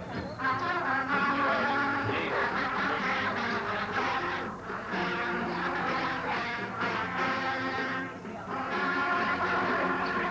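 Marching band of brass and drums playing, heard through a ragged VHS copy of a TV broadcast. It comes in loud about half a second in, holding sustained chords, with short drops in level near the middle and shortly before the end.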